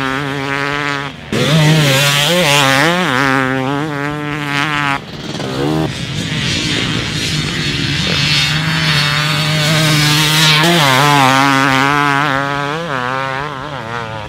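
Husqvarna TC300 two-stroke motocross bike's engine, with its FMF pipe and silencer, revving hard under load. Its pitch rises and falls with the throttle, with brief throttle chops about a second in and again around five seconds in.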